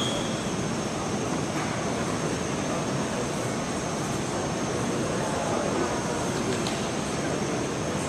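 Steady background noise of a gymnasium with seated spectators: a constant hiss-like din with faint, indistinct voices and a thin, high, steady whine.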